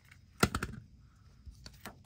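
Light clicks and taps of craft tape being handled and pressed onto paper: one sharp click about half a second in, a quick cluster right after, then a few fainter taps near the end.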